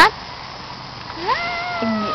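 A young child's high-pitched squeal, rising quickly and then held for about a second, over the creak-free hush of an outdoor playground; an adult's voice joins near the end.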